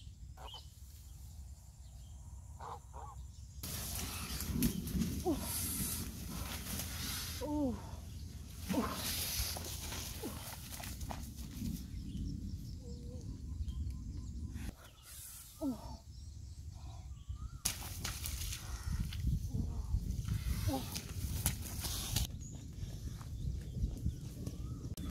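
Rustling and trampling through tall grass, with wind on the microphone, starting a few seconds in. A few short, pitched calls break through, most of them in the first half.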